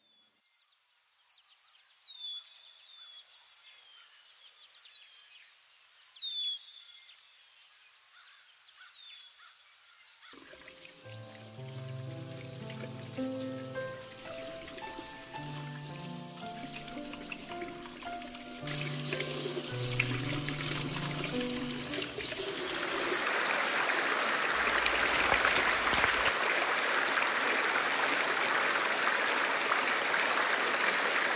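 Birds call with repeated high, falling chirps and a fast trill for about ten seconds. Then music with slow, held notes comes in. From about two-thirds of the way through, the rushing of a fast, swollen stream builds and becomes the loudest sound.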